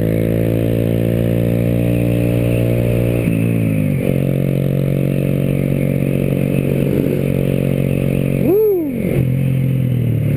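Honda Grom's small single-cylinder engine running under way at a steady speed. Its pitch drops about three seconds in, then holds lower. Near the end the engine pitch rises and falls quickly in a brief rev.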